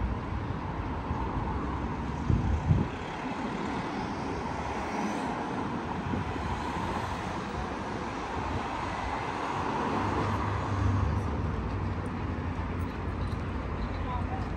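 City road traffic at a busy intersection: a steady hum of car engines and tyres, with a low vehicle rumble building about ten seconds in. Two brief low thumps a little over two seconds in.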